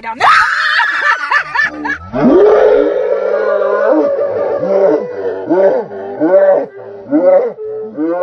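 Two women screaming in fright: a high shriek, then a long, loud held scream about two seconds in. It breaks into bursts of laughter.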